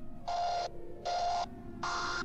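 Song intro: a buzzy, pitched sound chopped into short, evenly spaced pulses about one every three-quarters of a second, three of them, over a steady low hum.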